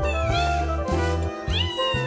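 A calico-and-white cat meowing twice up at the person: one call falling in pitch at the start, a second rising about a second and a half in.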